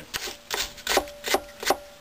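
A hand brush scrubbed back and forth over the finned cylinders of a vintage Maytag twin-cylinder engine, in about five quick scratchy strokes.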